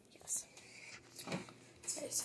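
Soft whispering, two short breathy hisses about a third of a second and just over a second in.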